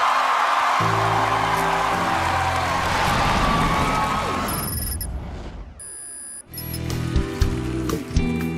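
Audience applause and cheering over backing music. About five seconds in it gives way to a falling whoosh sound effect with a high ringing chime, and then new music with a steady beat starts.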